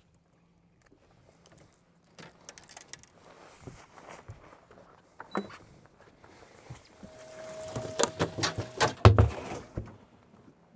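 Clicks, knocks and rustling of gear being handled on a bass boat, growing busier, with a faint steady hum partway through and a heavy thud among a cluster of knocks about nine seconds in.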